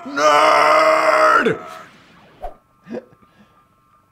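A voice yells one long, drawn-out "Nerd!" that falls away at the end, followed by a couple of short, quiet laughs.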